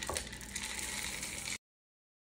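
Chocolate chips pouring from a plastic measuring cup into a stainless steel mixing bowl of cookie dough: a steady noise that cuts off suddenly about one and a half seconds in.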